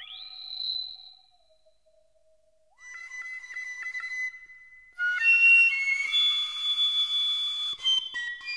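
Contemporary music for flute and electronic tape. A high held tone fades out and the sound drops almost to silence, leaving a faint low held tone. A rapidly flickering held note enters near the three-second mark, and about five seconds in a louder, dense layer of many held high tones with breathy noise comes in.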